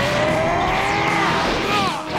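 Anime fight sound effects: a long, slowly rising whine like an energy attack powering up, with swishing pitch sweeps near the end.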